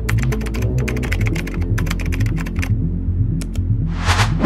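Computer keyboard typing sound effect: a fast run of key clicks for about two and a half seconds, then two more clicks a little later, over background music.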